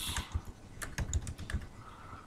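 Computer keyboard typing: a quick, uneven run of separate key clicks as a word is typed.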